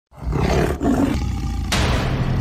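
A tiger's roar as a logo sound effect, rough and heavy in the low end, beginning just after a brief silence. A short burst of noise comes near the end.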